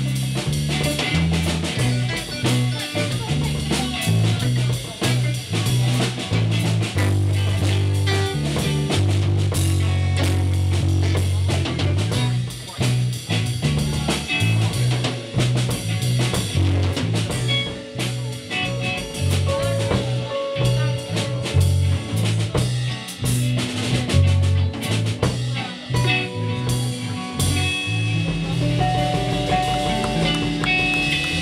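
Live band playing an instrumental stretch with no singing: electric guitars over a moving bass line and a drum kit. The sound is a bit fuzzy at the top.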